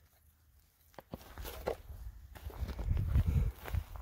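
Footsteps on stony, gravelly ground with low rumbling on the microphone from a handheld camera. After a silent first second there is a click, then the steps grow louder toward the end.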